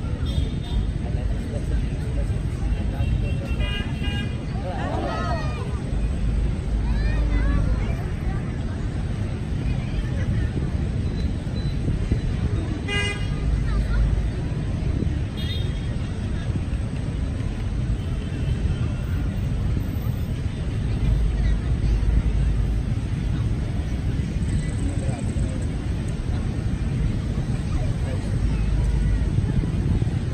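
Outdoor crowd and traffic ambience: voices chattering, a vehicle horn tooting briefly about 13 seconds in, and a low rumble throughout that swells every several seconds.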